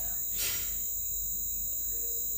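A steady high-pitched whine over a low hum during a pause in speech, with a short hiss about half a second in.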